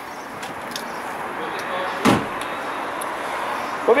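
The Skoda Fabia's tailgate shut once with a single thump about two seconds in, over steady outdoor background noise.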